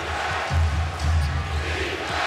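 Arena crowd noise with music over the PA system, its deep bass notes held for about a second at a time, and a basketball being dribbled on the hardwood court.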